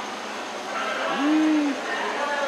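Indistinct background chatter in an indoor exhibit space. About a second in there is a short pitched tone that rises and then holds for about half a second.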